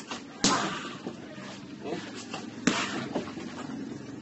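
Two kicks smacking a freestanding torso-shaped punching dummy: two sharp slaps a little over two seconds apart.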